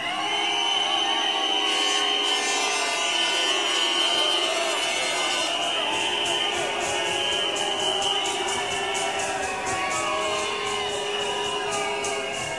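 A sound-clash crowd voting with noise: shouting and cheering over long, held high tones, with a fast, even rhythmic clatter of about four strokes a second joining about halfway through.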